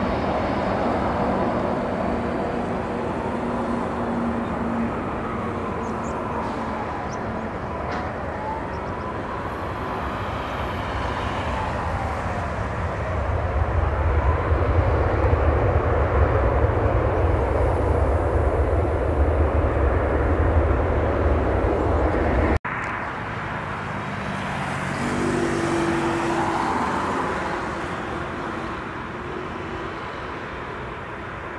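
Jet engine noise of a Ryanair Boeing 737 touching down and rolling out, with a deep low rumble that swells loud about halfway through. After an abrupt cut, the engines of another airliner on final approach grow louder near the end.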